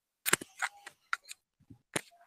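A handful of sharp clicks and knocks with faint clatter between them, the loudest about a third of a second in and another near the end.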